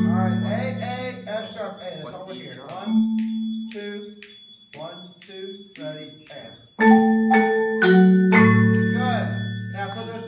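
Marimbas played together: a loud struck chord rings and fades, a few softer single notes follow, and another loud chord is struck about seven seconds in and left to ring.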